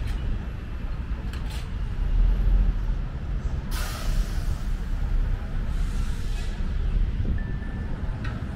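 Road traffic: vehicles rumbling low, with a sudden loud hiss about four seconds in that lasts about a second, and a fainter hiss about two seconds later.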